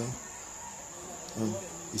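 Steady high-pitched insect chirring in the background, with a short murmured vocal sound about one and a half seconds in.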